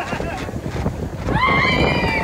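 Roller-coaster riders screaming, a high sustained scream rising in about two-thirds of the way through, over the steady rumble of the mine train cars running along the track.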